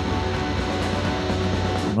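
Loud, dense post-rock music: a steady wall of sustained, held chords over a deep low drone, from the band's live silent-film soundtrack. It cuts off sharply at the very end.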